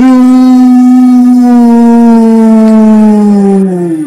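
Film soundtrack: one loud, long held note at a steady pitch, sliding down and fading away just before the end.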